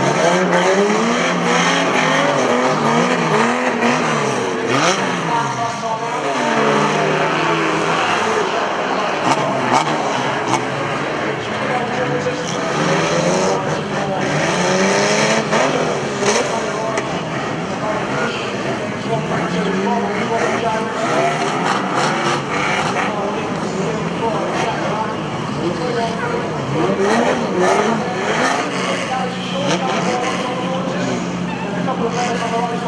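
Several pre-1975 classic banger racing cars' engines running together, many overlapping engine notes rising and falling as the cars rev and ease off around the oval.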